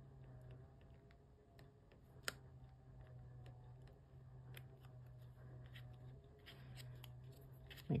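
Faint small clicks and paper-handling noises as small paper letters are peeled and pressed onto a card, with one sharper click about two seconds in, over a low steady hum.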